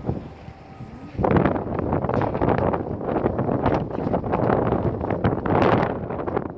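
Wind buffeting the phone's microphone: quieter for the first second, then loud, uneven gusts.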